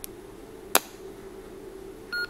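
A single sharp click from the buttons or power switch of a PNI Escort HP 62 handheld CB radio, about three quarters of a second in, as it is switched back on. A fainter click comes right at the start, over a faint steady hum.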